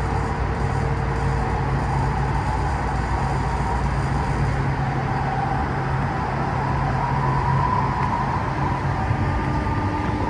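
Light-rail train running along the track, heard from inside the car: a steady rumble of wheels on rail, with a faint motor whine that drifts in pitch.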